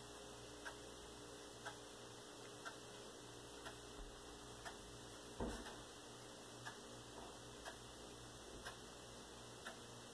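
Faint, steady ticking at an even one tick per second over quiet room hum, with a single low thump about five and a half seconds in.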